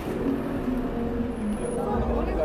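Busy street ambience: people's voices and a vehicle going by, with low rumble building near the end.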